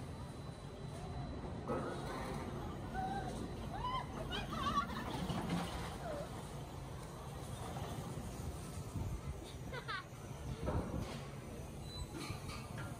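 Voices calling out and shouting, over a steady low rumble. The rumble swells briefly about five and a half seconds in, as a roller coaster car passes on its steel track.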